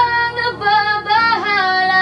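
A woman sings solo into a close studio microphone over quiet accompaniment. A long held note ends about half a second in, and a new phrase of several notes follows.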